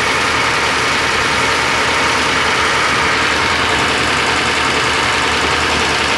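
Shop grinding machine running steadily.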